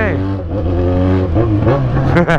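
Yamaha XJ6 motorcycle's inline-four engine running steadily at low revs under way.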